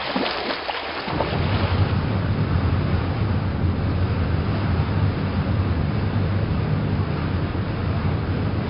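Steady low rumble of a ship's engines under a hiss of wind and sea, setting in about a second in and running evenly on.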